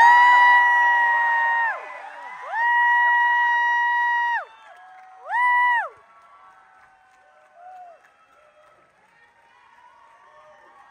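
Fans in the audience screaming in long, high-pitched held calls: two of over a second each, then a short one about five seconds in, over a cheering crowd. After about six seconds the cheering dies down to a low murmur.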